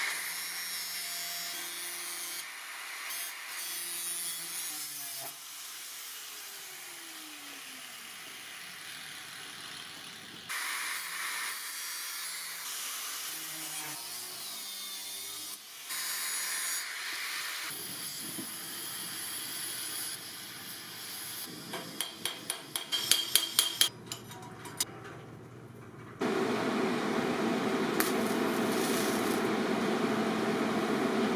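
Handheld angle grinder cutting a metal strip in short edited bursts of hissing, grating noise, with a run of sharp clicks a little past the middle. Near the end a louder, steady buzz of a TIG welding arc takes over.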